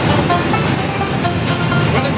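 An Irish traditional band with a banjo playing a tune, over the steady drone of a jet airliner's cabin.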